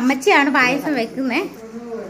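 A woman's voice speaking in quick, rising and falling phrases, then a steady, level hum for the last half second.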